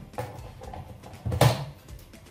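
A mains plug being pushed into a power socket: one sharp, loud click-like knock about one and a half seconds in, with a smaller knock near the start.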